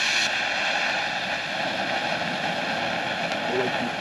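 A Miracle Fireworks elephant fountain, a consumer ground firework, burning at full strength with a steady hiss as it sprays sparks.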